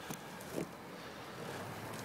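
Quiet, steady background noise with one brief faint sound about half a second in; no distinct source stands out.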